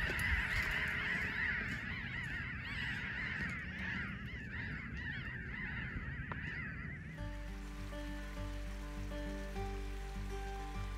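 A large flock of birds calling together, a dense chatter of many overlapping calls. About seven seconds in it stops abruptly and gives way to music with held notes over a low bass.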